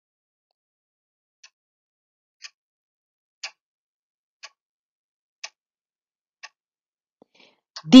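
Clock ticking, one tick a second, six ticks in all, starting about one and a half seconds in.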